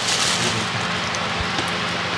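Thin plastic wrapping crinkling about half a second in as a handbag comes out of it, over a steady background hiss.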